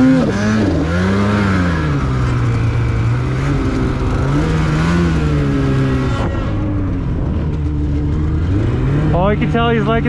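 Polaris 850 two-stroke mountain snowmobile engine running hard through powder, its pitch rising and falling over and over as the throttle is worked. A voice comes in near the end.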